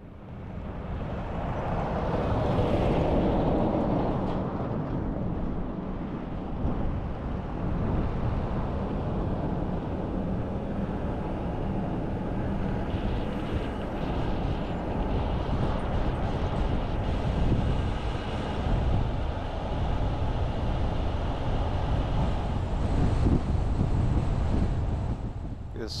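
Wind rushing over the microphone and road noise from travelling along a highway, building up over the first second or two and then steady.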